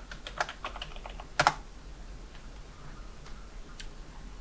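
Computer keyboard typing: a quick run of keystrokes over the first second and a half, ending in a louder double key press, then a couple of faint single clicks near the end.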